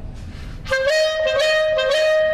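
A clarinet comes in about two-thirds of a second in with a short lower note that slurs up into a long, steady held note, which dips briefly near the end.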